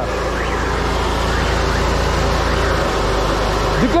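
Vanguard engine driving a high-pressure sewer-jetter pump, running steadily while water jets from the hose nozzle. About three seconds in the engine note changes as the rpm is lowered, bringing the water pressure down.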